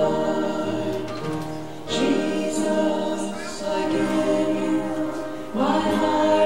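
Singing of a church song, led by a man and a woman at microphones, with the sound of several voices together. The phrases break briefly about two seconds in and again near the end.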